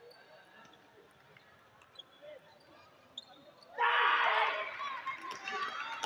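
Table tennis rally: a few sharp clicks of the ball off paddles and table. About four seconds in, spectators break into loud shouting and cheering as the point ends.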